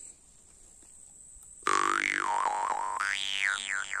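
Steel jaw harp (vargan) with a soft tongue, tuned to G1 (49.1 Hz), starting to play nearly two seconds in. It gives a low drone, with an overtone melody that glides up and down as the player shapes his mouth.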